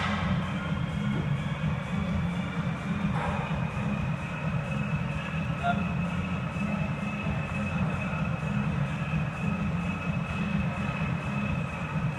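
Steady low rumble with a constant high whine of indoor gym background noise, typical of exercise machines or ventilation running.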